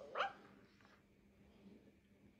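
Animatronic plush toy puppy giving one short, rising yip.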